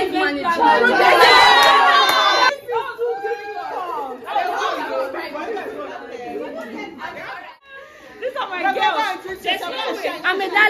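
A group of people talking and calling out over one another, several voices at once and loudest in the first couple of seconds; the chatter thins briefly about seven and a half seconds in, then picks up again.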